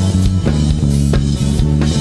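Instrumental passage of a gospel worship song between sung lines: a band playing, with a low bass line and drum hits keeping the beat.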